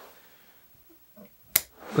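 A single sharp snip of bonsai scissors cutting through a small conifer branch, about one and a half seconds in.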